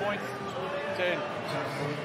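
A basketball being dribbled on a hardwood court on a fast break, with voices over it.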